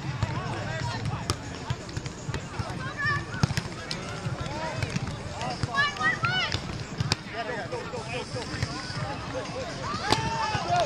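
Volleyball being struck during a beach volleyball rally: several sharp slaps a few seconds apart, over voices from people on the beach.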